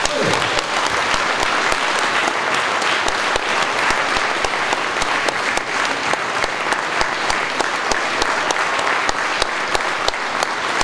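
Audience applauding: dense, steady clapping from a seated crowd at the end of a song.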